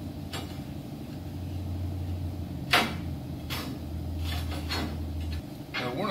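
Quarter-inch mild steel plate clanking and scraping against the steel slats of a CNC plasma cutting table as it is slid and nudged into position, with one sharp clank a little before the middle and several lighter knocks. A steady low hum runs underneath and cuts off about five seconds in.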